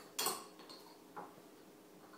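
A spoon knocks against a dish once, sharply, about a quarter second in, with a fainter knock about a second later.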